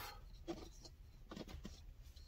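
Faint handling noise: a few small taps and rustles as an object is handled, over a low steady background hum.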